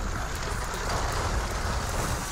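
Cartoon battle sound effects: a dense rushing noise over a heavy low rumble.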